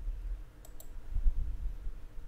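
Two quick computer-mouse clicks about half a second in, followed by a dull low thump, over a faint steady hum.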